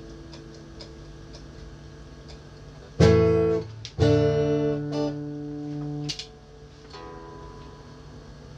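Electric guitar played between songs while being tuned: a held note fades, then two loud strummed chords come about three and four seconds in, the second ringing for about two seconds before it is cut off. A quieter single note rings near the end.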